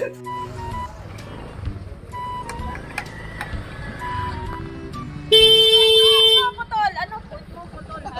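Background music with a stepping bass line, and a single loud horn honk about five seconds in, held for a little over a second.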